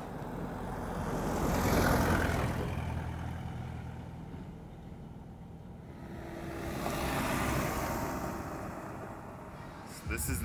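A motorbike and then a small Isuzu flatbed truck drive past on a gravel dirt road, engines and tyres on the loose stones swelling and fading: the first pass peaks about two seconds in, the truck's near the end.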